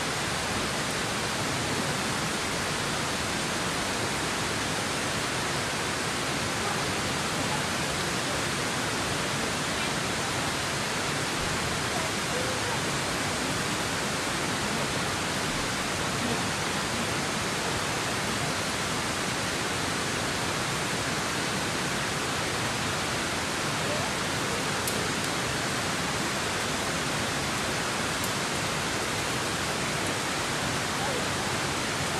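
Steady rush of flowing water, an even hiss that does not change in level, with a couple of faint clicks near the end.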